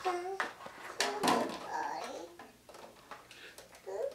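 Small children's voices in short bits, with a few sharp taps of drumsticks on a toy drum kit.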